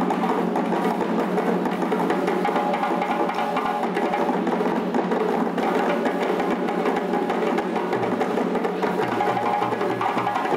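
Live djembe drumming: a fast run of sharp hand slaps and tones on the solo djembe over a second hand drum's accompaniment. A steady low bass beat comes in near the end.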